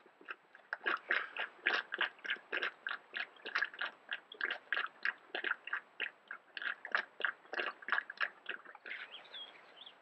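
Black bear chewing green plants: a steady run of chewing sounds at about three chews a second, stopping shortly before the end.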